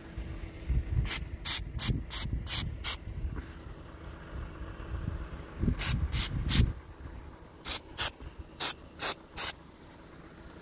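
WD-40 aerosol can sprayed in short squirts, about fourteen in three quick runs, with low rumbling handling noise under the first two runs.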